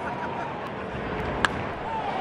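Sharp crack of a bat meeting a pitched baseball, about one and a half seconds in, hit for a high drive. A steady ballpark crowd murmur runs underneath.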